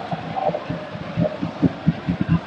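Football stadium crowd noise with a drum beaten in the stands, low thumps several a second that grow louder in the second half.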